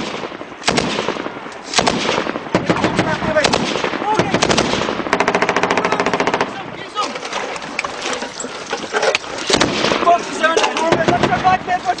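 Automatic weapons fire in a firefight: repeated bursts of rapid machine-gun fire with short gaps between them, going on through the whole stretch. Shouted voices come in near the end.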